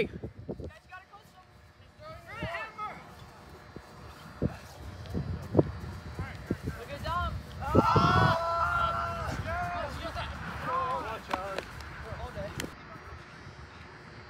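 Players' shouts and calls across an open field during an ultimate frisbee point, with one long held shout about eight seconds in, and scattered footfalls and thumps in between.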